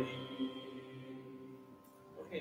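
The last held chord of choral music fading away, its steady tones dying to near silence.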